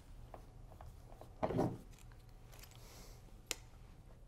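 Quiet handling of an Allen key unscrewing a bolt from a kayak's steering-bar mount: a few faint ticks, a short scraping rattle about a second and a half in, and one sharp click near the end.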